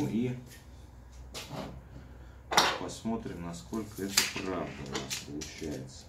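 A few sharp clicks and knocks as a steel tape measure is pulled out and laid against a mitre-gauge fence, the loudest about two and a half seconds in, with a man's low muttering over them.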